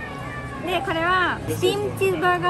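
A woman's voice making a high, drawn-out sing-song exclamation about a second in, rising and then falling in pitch.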